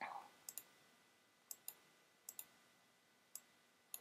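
Faint computer mouse clicks over near silence, several in quick pairs a little under a second apart.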